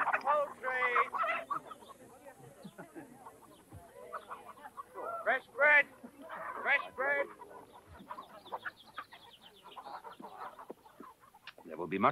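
Chickens clucking and squawking in short, irregular calls, the loudest a little past the middle, with people's voices now and then.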